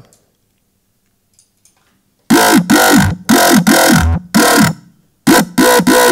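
Dubstep growl bass made with Ableton Operator's FM synth. It runs through overdrive, phaser, flanger, a second overdrive, a filter cutting the low end, and a saturator. Starting about two seconds in, it plays a riff of short, loud, rhythmic stabs whose tone shifts from stab to stab.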